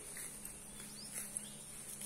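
High-pitched insect chorus, swelling and fading about once a second, over a faint steady low hum.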